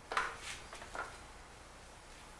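Prismacolor wax colored pencil scratching across vellum in a few short strokes within the first second, the first the loudest.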